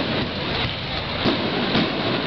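Aerial fireworks bursting overhead: a run of bangs, several in two seconds, over dense crackling from the falling stars.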